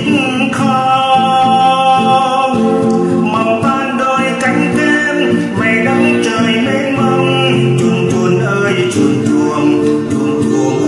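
A man singing a slow Vietnamese song over acoustic guitar accompaniment, holding long notes.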